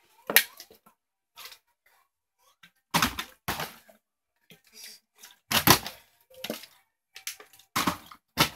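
A plastic water bottle being flipped and landing: a series of separate sharp knocks and thumps, about eight of them, the loudest around three and six seconds in. The last landing near the end leaves it standing upright.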